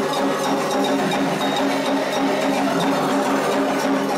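Candomblé ritual music: atabaque hand drums playing a steady dance rhythm with an agogô bell, and voices chanting over them.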